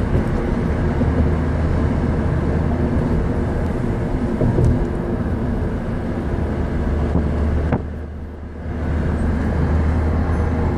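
Running noise of a moving vehicle heard from inside, a steady rumble with a low hum. Just before the last two seconds a click is followed by a brief drop in the noise, which then comes back.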